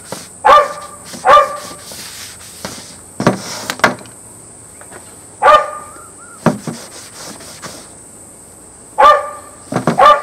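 A dog barking: four short single barks spaced unevenly, two close together at the start, one a few seconds later and one near the end. A few faint clicks between them.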